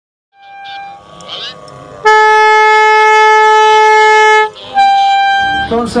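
Air horn blown in one long steady blast of about two and a half seconds, then a shorter, higher-pitched blast. A man's voice over a public-address system starts right at the end.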